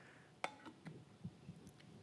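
Quiet handling of a plastic-lidded glass bowl chopper, the lid being fitted onto the bowl: one sharp click about half a second in, then a few faint ticks.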